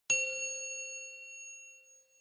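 A single bright metallic ding, struck once just after the start and ringing on with a few clear tones that fade away over about two seconds: a chime sound effect accompanying a studio logo card.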